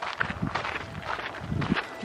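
Soft, irregular footsteps and rustling on a dirt hiking trail through grass.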